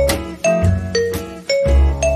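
Upbeat background music with a steady beat: bright bell-like struck notes over a bass note about every half second.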